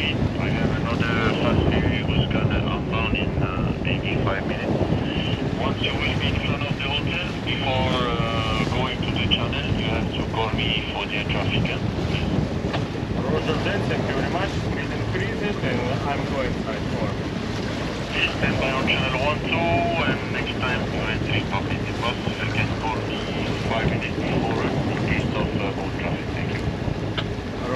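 Strong wind buffeting the microphone over sea noise aboard a sailboat, with a handheld VHF radio's voice traffic coming through in broken snatches.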